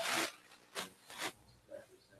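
Small photography gear being handled: a brief rasping, zipper-like scrape at the start, then a few faint soft knocks.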